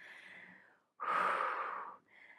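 A woman's breathing: a faint breath, then a louder, longer breath of about a second starting halfway through, as she exercises on a Pilates reformer.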